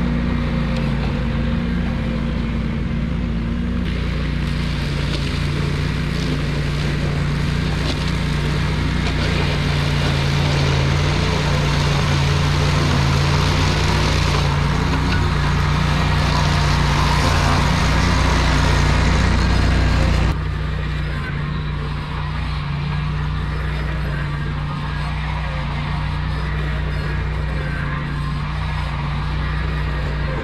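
Ventrac tractor's engine running steadily as it drives the Tough Cut mower through tall, overgrown grass, getting louder as it comes closer. About two-thirds of the way through the sound changes suddenly, the high hiss dropping away, and the engine carries on from farther off.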